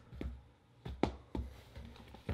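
A few faint taps and knocks of a tablet keyboard case being handled and flipped open on a desk.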